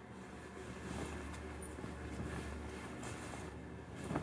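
Soft blankets and clothes rustling as they are handled and pulled about, with a low rumble of movement close to the microphone.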